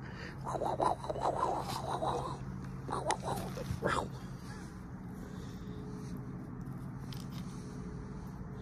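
A domestic cat vocalizing in an uneven run of short sounds over the first couple of seconds, then two more short sounds about three and four seconds in.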